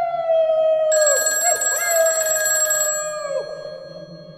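A bell rings for about two seconds, near the middle, over a long, high sustained tone that slowly falls in pitch and bends away at its ends.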